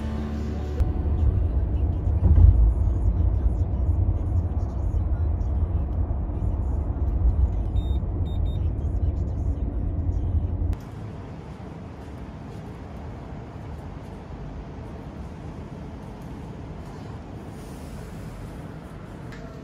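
Steady low road rumble of a car heard from inside the cabin, with a few short high beeps about eight seconds in. Just before eleven seconds it cuts off suddenly to a much quieter, even background noise.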